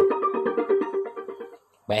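Music with a sustained note, played through a homemade TDA8944 12 V amplifier board into salvaged CRT TV speakers, fading to near silence about one and a half seconds in as the volume knob is turned down.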